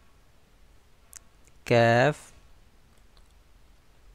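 Speech: a man says one Arabic letter name, drawn out on a steady pitch, about two seconds in. A faint click comes just before it.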